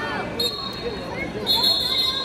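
A wrestling referee's whistle blown twice over crowd chatter: a short blast about half a second in, then a louder one near the end.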